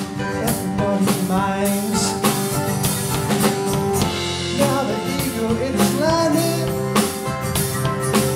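Live acoustic folk band playing: strummed acoustic guitar, mandolin, cello and drum kit, with singing over the top.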